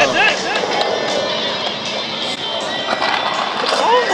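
Skateboard wheels rolling on a concrete bowl as a skater carves through it, with brief whoops from onlookers at the start.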